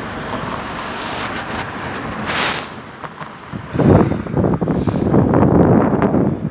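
Mercedes-Benz city bus running as it pulls slowly forward through a turn, with a short hiss about two and a half seconds in. From a little past halfway, loud wind buffeting on the microphone covers it.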